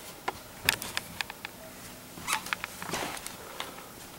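Handling noise from a handheld camera being carried and turned: a scattered series of light clicks and rustles, some in quick little clusters.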